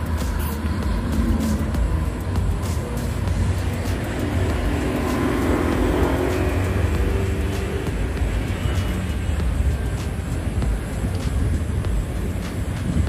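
Road traffic with a steady low rumble; a motor vehicle passes in the middle, its engine note rising and then falling away.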